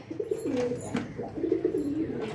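Domestic pigeon cooing: a low coo that steps up and down in pitch, repeated in a few phrases.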